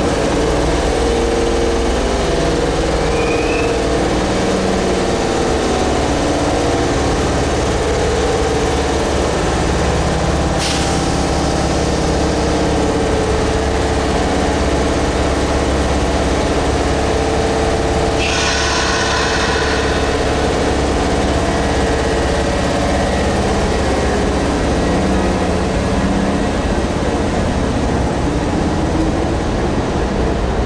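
Kintetsu 8600-series electric train standing at an underground station platform, its onboard equipment humming steadily. A short click comes about ten seconds in, and a brief hiss about eighteen seconds in.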